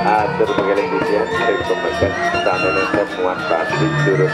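Balinese gamelan ensemble playing Barong dance music: dense ringing metal tones struck at a fast even pulse over a sustained low hum. A voice is heard over the music in the first second or so.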